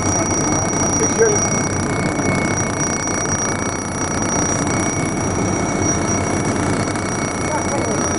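Steady machine noise with two constant high-pitched whines running through it, unchanging for the whole stretch.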